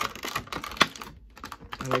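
Clear plastic Funko Pop box insert clicking and crinkling as it is handled to free the vinyl figure: a run of sharp irregular clicks, with one louder snap just under a second in.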